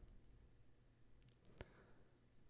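Near silence: room tone, with two faint short clicks a fraction of a second apart past the middle.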